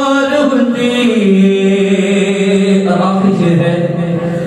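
A man's voice reciting a naat, Urdu devotional verse in praise of the Prophet, sung without accompaniment into a microphone. He draws out long held notes that slide down to a lower pitch about a second in.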